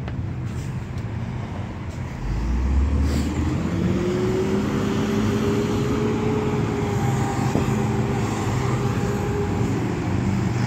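A motor engine over a low background rumble: about two seconds in it comes up with a loud low surge, its pitch rises, and it then runs steadily.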